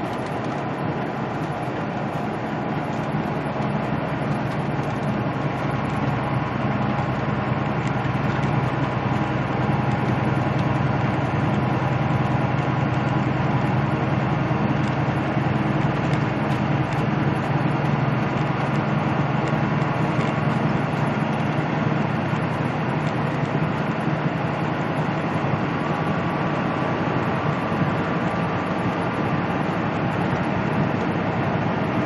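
Peterbilt semi truck's diesel engine droning steadily at highway speed, with tyre and road noise, heard from inside the cab. It grows a little louder over the first several seconds, then holds steady.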